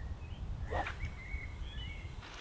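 Faint bird chirps, a few short calls, over a low steady rumble of outdoor background noise.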